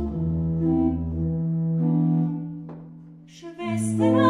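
Ratzmann pipe organ playing slow, held chords on its own, without the voice; the sound fades away about three seconds in, and a new chord enters shortly before the end.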